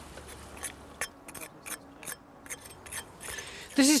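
A hand tool scraping against the face of an excavated brick wall, heard as a run of short, sharp scrapes and clicks. Before it, a low steady hum stops about a second in.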